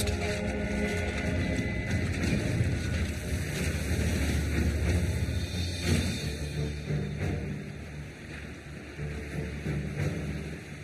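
Dramatised sound effects of a steel truss bridge span collapsing onto a ship: a heavy low rumble with wind- and water-like noise that eases off in the second half.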